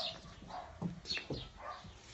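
Dog barking and yapping in short, sharp calls, about two a second.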